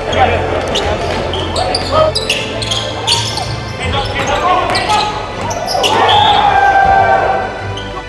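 Basketball game in a gym: a ball bouncing on the hardwood court, with sharp knocks and squeaks from play and players shouting, a louder burst of shouting about six seconds in.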